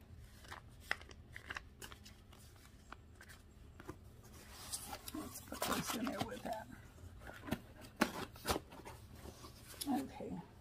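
Paper and cardboard being handled: receipts folded with a few small clicks, then rustling of paper and plastic bags in a cardboard shipping box for a couple of seconds around the middle, and two sharp taps of cardboard near the end.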